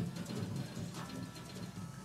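Faint TV news show title music: a short sting with a couple of steady held tones entering about halfway through.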